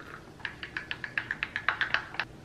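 A spoon stirring matcha, sugar and hot water in a glass tumbler, clinking against the glass about a dozen times in a quick, even rhythm, each tap ringing briefly.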